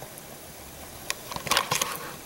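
Low steady kitchen background for about a second, then a quick cluster of light clicks and taps in the second half.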